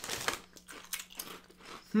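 Irregular crisp crunches of a sweet-and-spicy crunchy snack being bitten and chewed close to the microphone.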